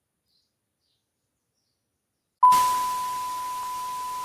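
Dead silence, then about two and a half seconds in a TV static transition effect cuts in suddenly: loud white-noise hiss with a steady high beep like a test tone, loudest at its onset and settling slightly.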